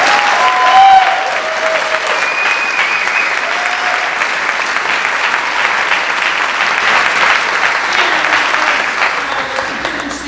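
Audience applauding, with a few short cheers in the first three seconds; the clapping is loudest about a second in and thins out near the end.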